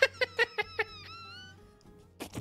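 A man laughing hard: about five quick bursts of laughter, then a high, wavering squeal that fades out about a second and a half in.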